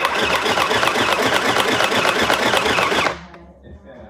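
Small electric sewing machine running at speed, a fast steady rattle of needle strokes that starts abruptly and stops about three seconds in.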